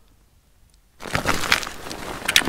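Crunching and scraping of frozen snow and ice close to the microphone, starting suddenly about a second in as a rapid run of sharp crackles.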